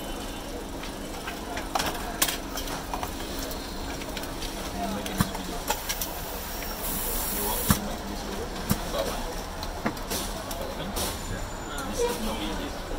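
A hiss of compressed air lasting about two seconds in the middle, ending in a sharp click. Under it run a background murmur of voices and scattered clicks and taps.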